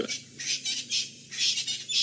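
Birds calling in the bush, high-pitched chatter that grows louder near the end.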